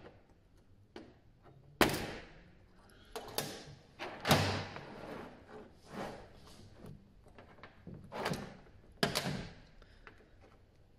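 A steel pick tool prying on a Mercedes timing chain's link side plate, then the chain handled on a metal bench: a string of sharp metallic clicks and clinks, the loudest about two and four seconds in. It is the chain being de-linked, its outer link plate popped off after the pins were pressed flush.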